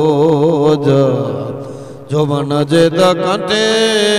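A man chanting devotional verses in a wavering, ornamented melody. He draws out the notes, lets one die away about two seconds in, then resumes and holds a long note near the end.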